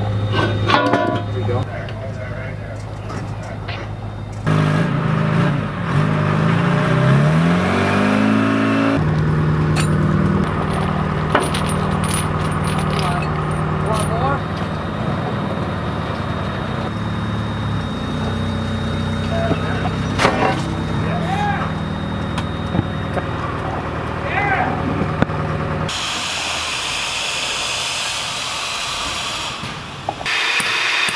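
Diesel engine of an extended-reach forklift running under load, rising in pitch as it revs up a few seconds in and then holding steady, with a few sharp metal clanks.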